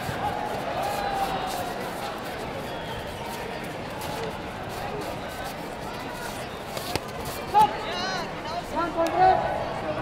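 Hall babble of voices, with sharp knocks of kicks and punches landing on gloves and pads scattered through it, a clear one about seven seconds in. Loud shouts come near the end.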